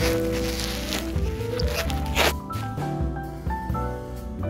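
Background music with a melody of held notes. Over it, for the first two seconds or so, there is a rustling crunch of a hand scooping into fresh, deep snow.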